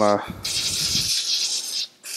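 Aerosol can of Tri-Flow synthetic oil spraying onto a paper towel: one steady hiss lasting about a second and a half, cutting off sharply.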